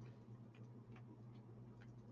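Near silence: room tone with a faint steady low hum and a few soft ticks.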